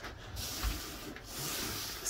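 Faint rubbing and handling noise as the phone is moved, with a soft bump a little over half a second in.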